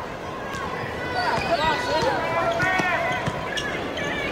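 Basketball sneakers squeaking on a hardwood court in short, rising-and-falling chirps, most of them between about one and three seconds in, with a few knocks of a dribbled ball, over steady arena crowd noise.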